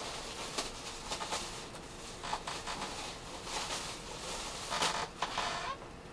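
Irregular rustling and scraping of a cardboard box and the papers inside it being handled, with a few louder scrapes near the end.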